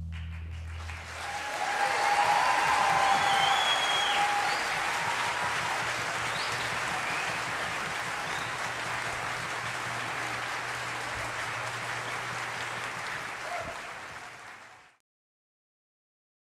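Concert hall audience applauding after the orchestra's last low note dies away in the first second, with a few cheers or whistles about two to four seconds in. The applause tapers off and fades out near the end.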